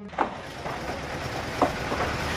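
Construction-site background noise: a steady rush of outdoor noise with two short, sharp knocks, one just after the start and one near the end.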